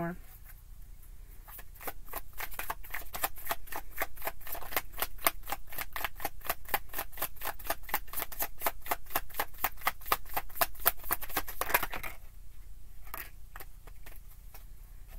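Tarot cards shuffled by hand: a rapid, even run of card taps, about five or six a second, starting about a second and a half in and stopping a couple of seconds before the end.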